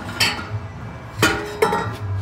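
Metal clanking as a steel exhaust muffler and its pipes are worked free of their rubber hangers: three sharp clinks, the second and loudest about a second in, ringing briefly after it.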